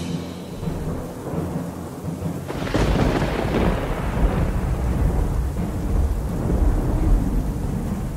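Thunderstorm: a steady hiss of rain with a low rumble, then a sudden clap of thunder about two and a half seconds in that rolls away slowly into a continuing rumble.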